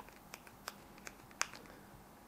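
A few faint, sharp clicks of a handheld RGB controller remote's buttons being pressed, the loudest about one and a half seconds in.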